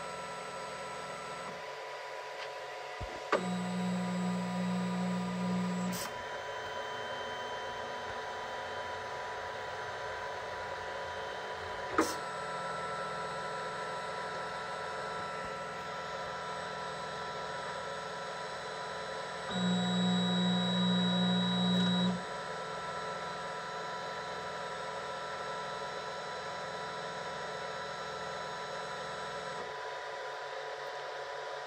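Flashforge Guider 2 3D printer's fans and electronics humming steadily, with its stepper motors buzzing twice for about two and a half seconds, a few seconds in and again past the middle, as the machine moves during bed levelling. A sharp click about twelve seconds in.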